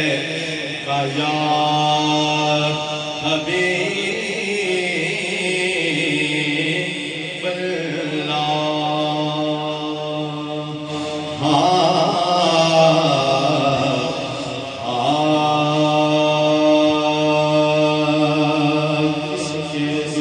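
A man singing a naat, an Urdu devotional poem in praise of the Prophet, solo and without instruments, in long drawn-out melodic phrases of about four seconds each.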